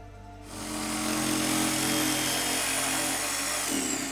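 Corded DeWalt jigsaw cutting through a board. It starts about half a second in and runs steadily, then winds down near the end with a falling pitch.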